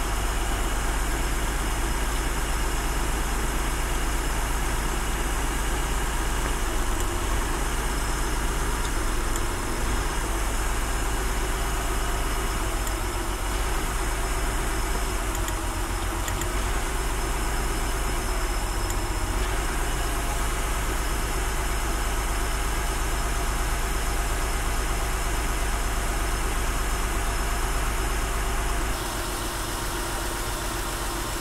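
Honda J-series V6 idling steadily with the hood open, its level dropping slightly near the end, while the coil-pack connectors are pulled to find the misfiring cylinder by a change in engine RPM.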